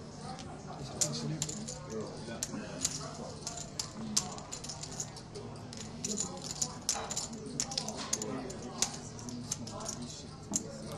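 Poker chips clicking against each other again and again as they are pushed and sorted on a felt table.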